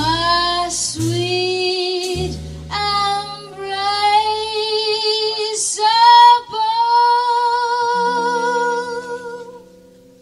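A woman singing a slow jazz ballad, holding long notes with vibrato, over a small jazz band with double bass. The last long note fades away near the end.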